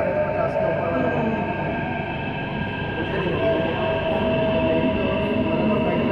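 Delhi Metro train running, heard from inside the car: a steady whine of several held tones from the traction drive over the continuous rumble of the wheels on the track.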